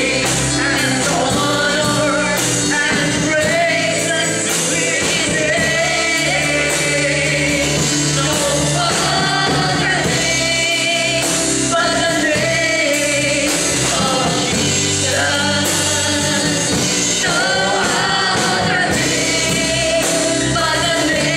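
Gospel worship song: a man sings into a handheld microphone over continuous instrumental backing.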